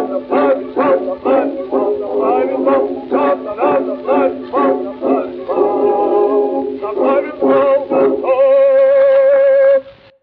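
Early 1906 gramophone recording, thin and narrow in range, of a bass-baritone singing the last bars of an opera aria in Russian with accompaniment. Near the end he holds a long final note with vibrato, and then the recording stops abruptly.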